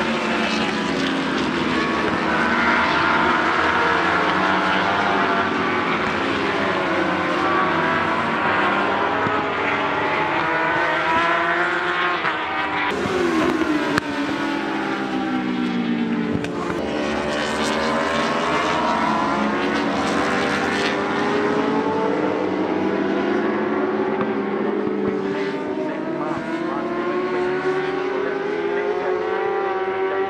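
Superbike racing motorcycles passing in a pack, several engines revving at once, their pitch repeatedly falling and rising.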